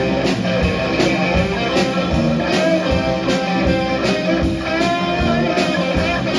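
A live southern rock band playing: an electric guitar plays over drums keeping a steady beat.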